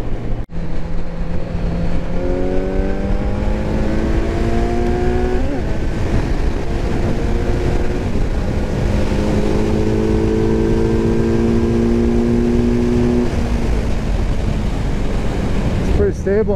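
Kawasaki Z900's 948 cc inline-four engine pulling under acceleration in a high gear. Its pitch rises steadily for a few seconds, eases off about five seconds in, then climbs slowly again before fading near the end, all over heavy wind and road rush.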